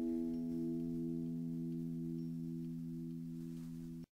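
Final guitar chord of a song ringing out and slowly fading, with a gentle wavering in its tone, then cut off abruptly right at the end.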